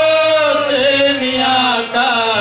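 A man singing a Marathi folk song into a microphone, holding one long note that bends slightly, with a short break near the end before the next phrase.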